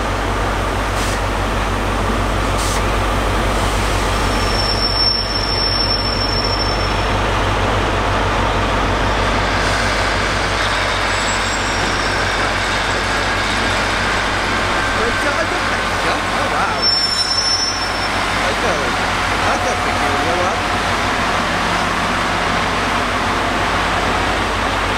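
Diesel multiple-unit trains running at a station platform: a steady low engine drone and rumble. Brief high-pitched squeals come about five seconds in and again around seventeen seconds.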